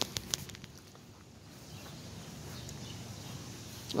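A few sharp clicks in the first half second, then faint steady outdoor background noise: handling noise from a handheld camera being turned.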